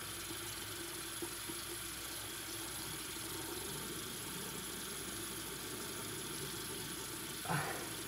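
A steady, even hiss that does not change, with a brief soft voice sound near the end.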